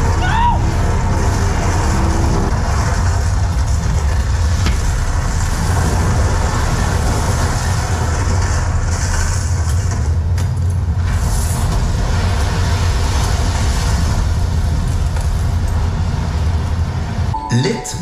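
Ice show soundtrack played loud through a venue's speakers: a steady, deep rumble with a noisy wash over it. The rumble drops away near the end as music comes in.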